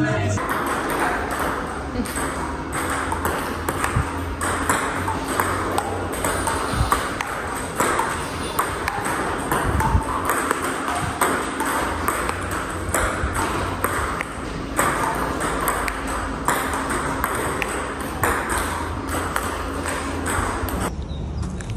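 Table tennis rally: the ball clicking off the paddles and the table in a quick, steady back-and-forth, with voices in the background.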